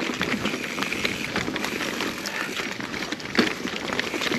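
Mountain bike rolling fast over a rocky trail: tyres crunching over rock and dirt, with frequent rattling knocks from the bike and a sharper knock about three and a half seconds in.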